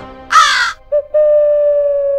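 Comic sound effects: a harsh, caw-like squawk lasting about half a second, then, after a brief blip, a long held musical note that sinks slowly in pitch.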